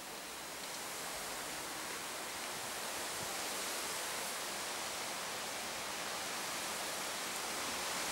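A steady, even rushing hiss of outdoor background noise that grows a little louder over the first couple of seconds, with no distinct events in it.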